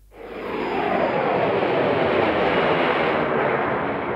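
Turbine engine of a model jet passing in a low flyby: a loud rushing whine that swells in over the first second, its pitch falling as the aircraft goes by.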